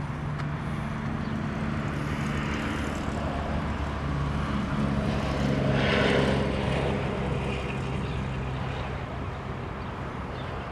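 A vehicle engine running with a steady drone, swelling louder about six seconds in and then easing off.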